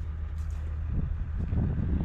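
A steady low engine hum runs throughout. About a second in, it is joined by rustling and crackling as a green barley head is handled and broken open by hand.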